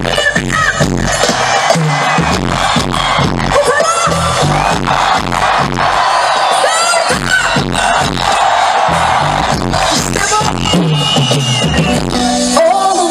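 Live pop concert music played loud through the stadium PA with a steady dance beat and heavy bass, heard from within the crowd with some crowd noise.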